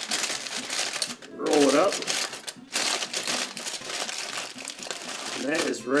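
Aluminium foil crinkling in bursts as it is folded and crimped by hand into a cooking packet.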